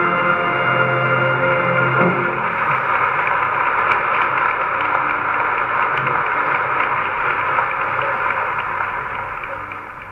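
A closing music chord on an old 1930s recording ends about two seconds in. It is followed by steady audience applause that fades out near the end, heard through the muffled, narrow sound of the old transfer.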